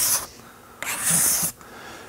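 Steel card scraper with a freshly burnished hook scraping across a wooden workbench top in two short strokes, the second about a second in, each a high scraping hiss as the hook cuts shavings.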